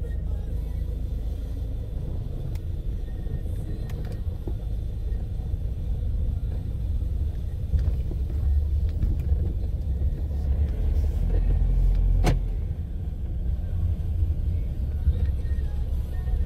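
A low, steady rumble that swells somewhat past the middle, with a single sharp click about twelve seconds in.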